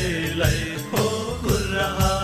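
Sakela dance music: drum and cymbal strokes keeping a steady beat about twice a second, under voices chanting or singing.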